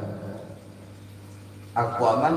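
A pause in a man's speech over a microphone, filled only by a low steady hum; his voice comes back in sharply near the end.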